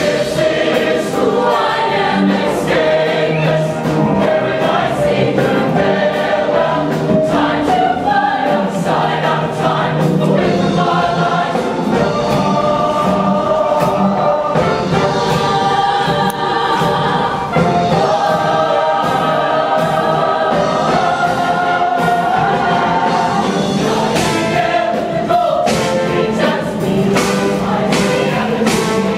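Mixed show choir of men and women singing full-voiced in harmony, backed by a live band with drums keeping a steady beat.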